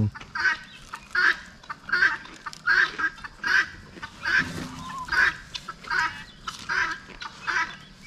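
Guinea fowl calling: a harsh, repeated call, about ten in a row at a steady pace of a little more than one a second.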